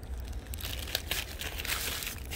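Paper sandwich wrapping crinkling and rustling in quick, irregular crackles as hands peel it open, over a low steady rumble.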